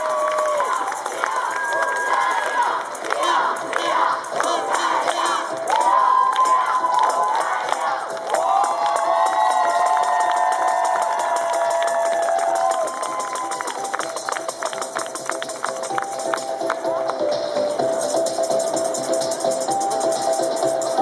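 Crowd cheering, shouting and clapping, with music coming in during the second half.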